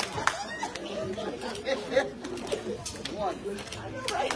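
Many people talking at once as a congregation greets and hugs, with a couple of sharp claps or knocks.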